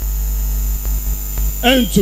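Steady low electrical mains hum from the public-address sound system, with no speech over it until a voice comes in near the end.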